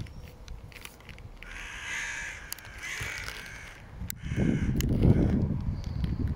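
Two harsh bird calls about a second apart, then a louder low rumble in the last two seconds.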